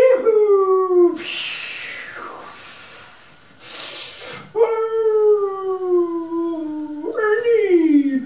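A person's voice crying in long, falling, wailing howls, with loud breathy gasps between them: a short wail at the start, a longer one about halfway through, and a rising cry near the end.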